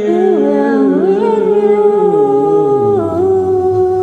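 A male and a female voice singing a karaoke duet over a backing track, holding long wordless notes together with slow glides between pitches.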